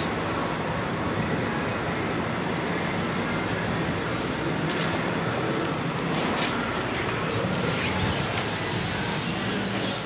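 Steady low rumble of idling diesel engines, with a couple of short clicks around the middle.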